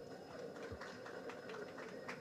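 Faint background noise of a crowded hall, with a few faint clicks.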